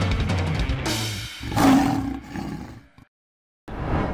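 A drum kit playing over a music track stops about a second in. A loud lion roar sound effect follows, lasting about a second.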